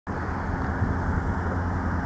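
Steady low rumble of outdoor vehicle traffic noise.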